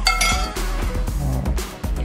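Background music with a steady bass line. Right at the start, a single clink of a metal spoon against a ceramic plate, ringing briefly.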